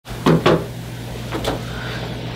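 Two quick knocks close together, then a fainter one about a second later, over a steady low hum.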